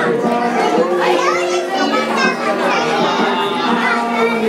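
Many children's voices chattering and calling out at once in a crowded room, with music playing in the background.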